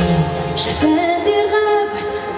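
Live pop music: a woman singing into a microphone over band accompaniment, with the low bass note dropping out right at the start.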